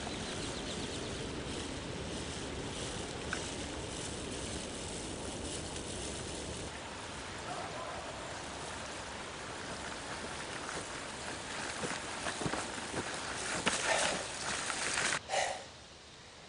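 Steady outdoor background noise in an open field, with faint ticking through the first half. In the last few seconds a run of louder, closer clicks and knocks.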